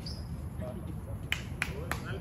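Badminton rackets striking a shuttlecock in a fast exchange: three sharp pops in quick succession starting about a second and a half in, over a low steady background rumble.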